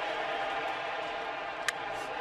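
Steady murmur of a ballpark crowd from a TV baseball broadcast, with one sharp crack of the bat hitting the pitch near the end.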